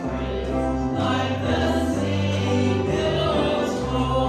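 Gospel song sung over an instrumental accompaniment, with held chords above bass notes that change about once a second.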